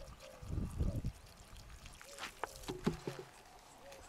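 Water poured from a plastic bottle trickling into a scorpion burrow in the soil, flooding it to drive the scorpion out. A few sharp clicks follow in the second half.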